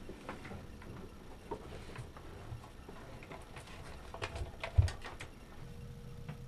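Handling noise from hands working with wiring and gear at a boat's switch panel: scattered light clicks and taps, with a couple of louder knocks about four and a half to five seconds in.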